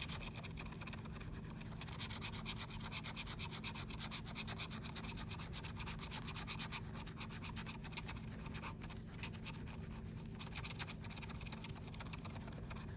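A scratcher tool rubbing the silver coating off a scratch-off lottery ticket in quick, steady back-and-forth scraping strokes, many to the second.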